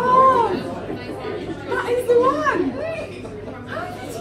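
Several people's voices overlapping in excited chatter and exclamations, the sound of an amazed reaction to a card trick.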